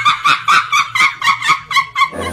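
A woman crying in high-pitched, quick, rhythmic sobs, about seven a second, sounding thin with almost no low end.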